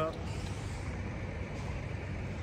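Steady low rumble of idling diesel engines, from a parked motor coach and the trucks around it.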